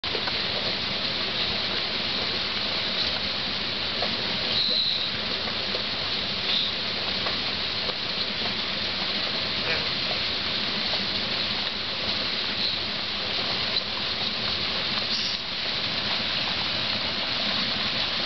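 Steady hiss of falling rain.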